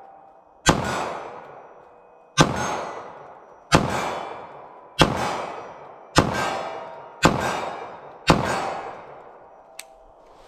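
Seven shots from a compact .380 ACP pistol firing Speer Gold Dot 90 gr hollow points at a measured pace, one every one to two seconds. Each report is followed by a long echo fading out over about a second. A faint click comes near the end.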